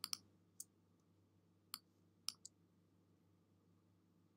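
Computer mouse clicking about six times against near silence: a quick double click at the start, single clicks about half a second and a second and a half in, and another quick pair a little past two seconds.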